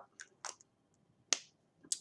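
Three or four brief, soft clicks with quiet between them, the sharpest a little past halfway.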